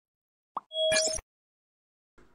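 Subscribe-button sound effect: a short pop about half a second in, then a brief click with a short tone just before the one-second mark.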